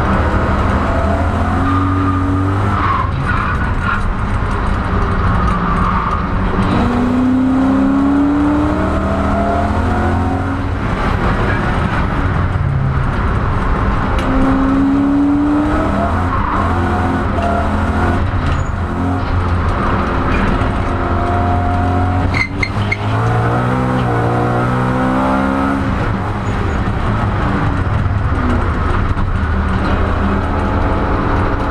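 BMW M3 E92 GT4's V8 engine heard from inside the cabin, its pitch climbing and dropping repeatedly as it revs and shifts while the car slides on cold tyres, with tyre squeal. There is one sharp crack about three-quarters of the way through.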